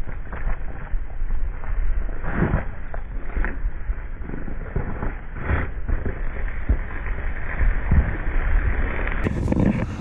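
Slowed-down audio of a pan of boiling water being flung overhead into freezing air: a deep, muffled rumble of wind on the microphone, with a few drawn-out whooshes about two and a half, three and a half and five and a half seconds in.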